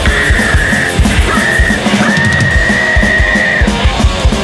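Heavy metal band playing loud: fast drumming under distorted electric guitar, with a high held note that breaks off and comes back, sounding longest in the second half.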